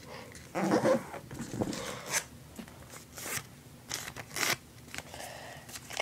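Sheet of origami paper rustling and crinkling as it is folded and creased by hand against a tabletop, in short irregular bursts.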